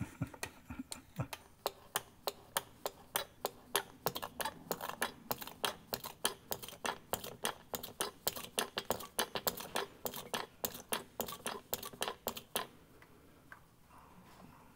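Rapid, irregular clicking, about three to five clicks a second, from hand-pumping gear oil through a plastic tube into a transfer case fill hole. The clicking stops shortly before the end, once the case is full and oil runs out of the fill hole.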